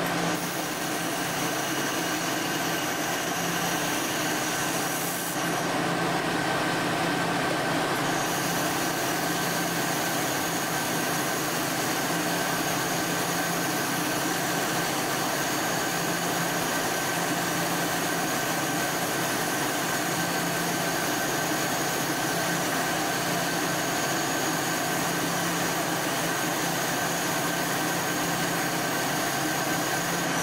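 Steady whir of the laser welding cell's machinery running, with a constant high whine and a low hum; the high whine drops out for a few seconds about five seconds in, then returns.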